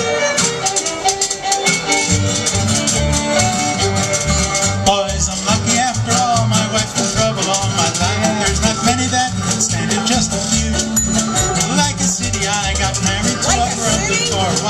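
Old-time string band playing the instrumental opening of a blues tune: fiddle over acoustic guitar, banjo and mandolin, with the upright bass coming in about two seconds in.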